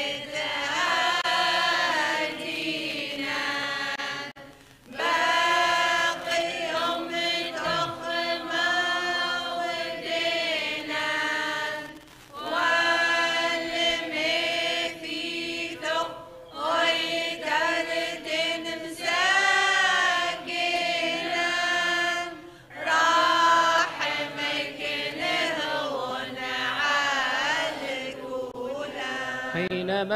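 Choir chanting a Syriac Orthodox liturgical response in long melismatic phrases, with brief pauses between them.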